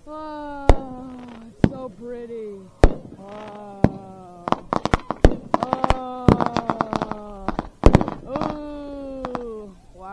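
Fireworks going off: sharp bangs and a rapid run of crackling pops in the middle, with the loudest reports near the start, about three seconds in and about eight seconds in. Drawn-out "ooh" voices from onlookers run under them.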